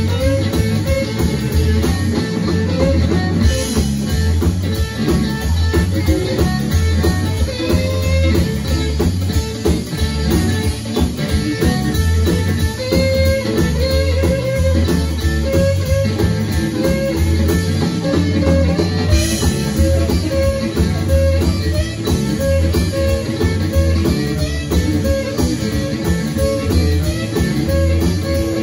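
Live blues band playing an instrumental break, with amplified harmonica played into a handheld microphone over electric guitar, electric bass and drum kit.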